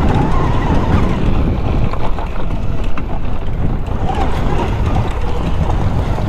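Wind buffeting the microphone over riding noise as an Altis Sigma electric dirt bike climbs a loose dirt hill, with a faint motor whine that rises near the start and again about four seconds in.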